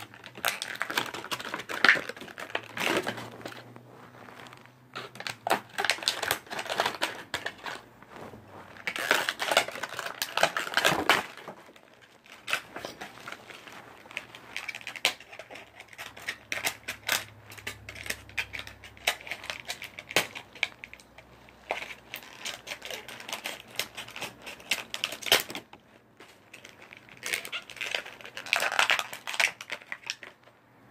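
Toy packaging being worked open by hand and with scissors: an irregular run of crinkling, clicks and scrapes.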